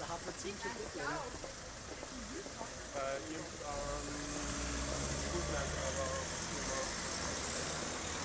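Car engine running close by, a steady low hum with some hiss that sets in about four seconds in, over faint voices.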